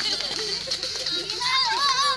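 A group of young children chattering and shouting together, with one child's high, wavering call in the second half.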